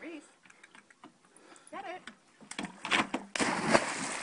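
A chocolate Labrador retriever's claws clicking fast on wooden dock boards as she runs, then a big splash about three and a half seconds in as she leaps into the water.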